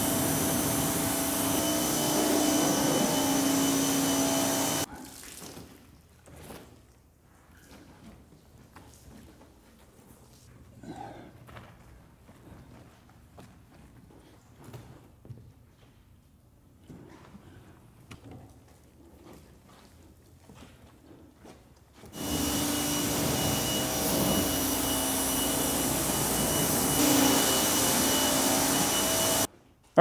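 Pressure washer running, spraying water to rinse foam off a car's bodywork, a steady rushing noise with a steady hum under it. It stops about five seconds in, leaving only faint scattered sounds, starts again a little after twenty seconds, and cuts off just before the end.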